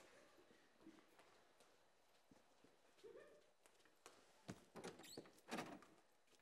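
Near silence, then a few faint clicks and knocks in the second half: footsteps and a front door being opened.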